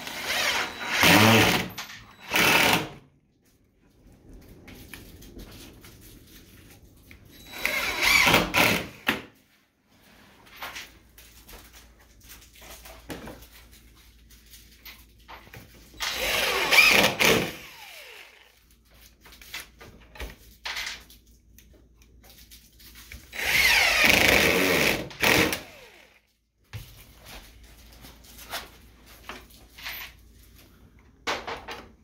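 DeWalt 20V MAX cordless impact driver driving screws into tilt-tray hinge brackets inside a sink-base cabinet. It runs in short bursts of a second or two, four times, several seconds apart.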